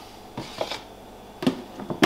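Hollow plastic clacks and knocks from a black plastic snake hide being lifted and set down inside a plastic rack tub. There are a few short strikes, the sharpest about one and a half seconds in and another just before the end.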